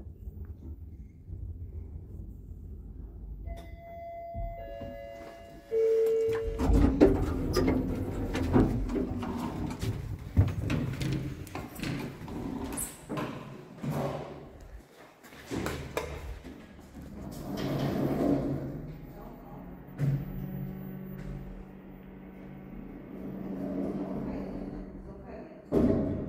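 A lift car reaching its floor: a short series of electronic chime tones, stepping down in pitch, then the sliding doors opening with a sudden jump in noise. After that come people's voices and movement.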